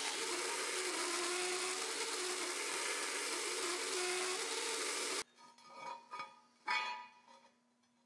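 Belt grinder running as grooves are ground across a steel billet to cut a ladder pattern: a steady grinding noise that stops suddenly about five seconds in, followed by a few light knocks.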